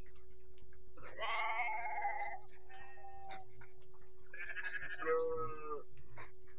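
A goat bleating: two long, quavering bleats, the first about a second in and the second near the end, with a fainter call between them.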